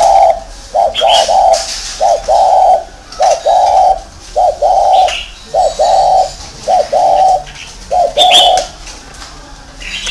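Spotted dove cooing over and over, a run of low two-part coos about one a second. Brief high chirps from other small birds come in a few times.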